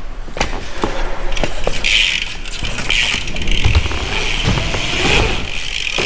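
A BMX bike on skatepark ramps. A few light clicks come first; from about two seconds in the tyres hiss steadily over the ramp surface, with low thuds as the bike goes through the transitions.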